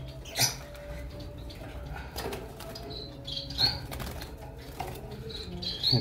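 Caged finches fluttering their wings in short bursts as a hand reaches in to catch one, with a few brief high chirps, a pair of them near the end.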